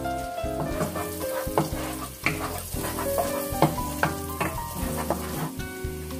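Chopped onion and garlic sizzling in butter and oil in a non-stick frying pan, with scattered clicks and scrapes of a wooden spatula stirring them. Instrumental background music plays underneath.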